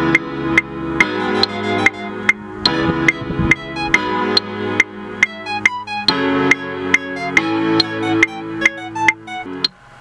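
A looped electronic beat from the iMaschine 2 music app, at about two drum hits a second, with sustained synth chords played over it on the app's on-screen keyboard. The chords drop out shortly before the end, leaving the drum hits.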